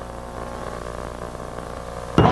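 Steady electrical hum, a low buzz with many even overtones, on an off-air TV recording during the dead-air gap between two promo soundtracks.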